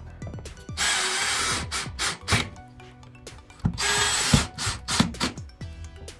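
Cordless drill-driver running twice, about a second each time, driving screws into an aluminium extrusion.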